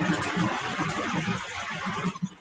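A burst of rushing noise that starts and stops abruptly and lasts about two seconds, with faint low thuds under it.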